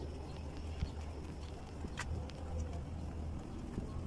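Footsteps on a concrete lane, with a few faint clicks and one sharper click about two seconds in, over a steady low rumble.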